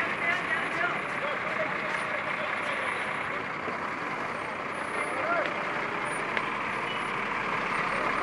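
Steady street traffic noise: a constant rush of vehicles moving along a road, with faint distant voices.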